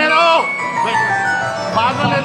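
Devotional song: a held low drone and a sustained instrumental melody, with a voice singing gliding, ornamented phrases at the start and again near the end.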